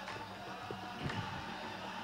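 Faint stadium background from an old football broadcast, with a steady low hum running under it.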